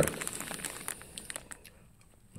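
Clear plastic parts bag crinkling in a hand, a run of small irregular crackles that thins out and stops about one and a half seconds in.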